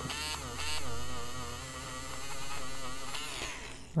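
AFMAT electric eraser motor whirring as it erases coloured pencil from paper, its pitch wavering as it is pressed and eased. It stops near the end.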